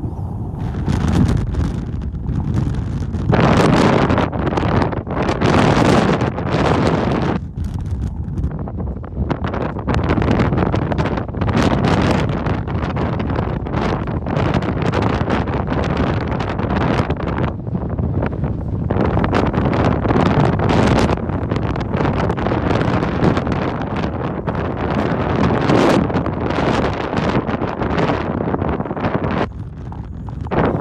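Strong wind buffeting the microphone, loud and uneven, coming in gusts with short lulls between them.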